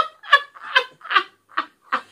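A man laughing hard in a run of short, high-pitched bursts, about three a second.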